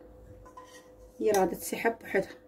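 Metal spoon scraping against the inside of a metal saucepan while scooping melted chocolate, with loud scrapes starting a little past halfway.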